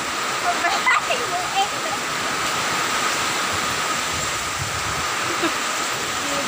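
Heavy rain and strong wind of a storm, a steady dense rushing hiss.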